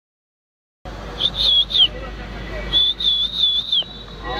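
A series of short, high, clear whistled notes in two groups, three and then four, several ending in a falling glide.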